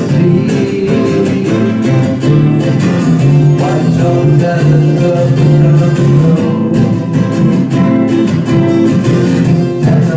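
A twelve-string and a six-string acoustic guitar strummed together in steady chords.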